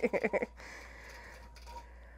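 A woman's laugh trails off in the first half second. Then a computer-guided long-arm quilting machine runs steadily and quietly, stitching out a pantograph pattern.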